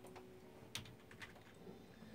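Faint, irregular keystrokes on a computer keyboard.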